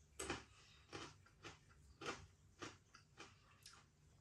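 Faint crunching of a mouthful of Bombay mix (mostly crisp fried noodles) being chewed, about two crunches a second, the first the loudest.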